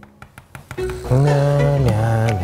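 Background music: a few soft clicks, then a held low note from about a second in.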